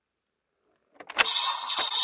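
A plastic click from the Bandai DX Gotchardriver toy belt as its side parts are pushed in, about a second in. A loud electronic sound effect then plays from the toy's speaker.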